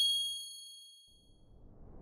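A bright, bell-like ding from a logo sound effect, ringing out and fading over about a second and a half. A rising whoosh then swells in toward the end.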